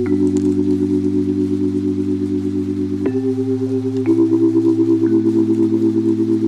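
Slow lo-fi background music: held chords with a gentle wavering in volume, moving to a new chord about three, four and five seconds in.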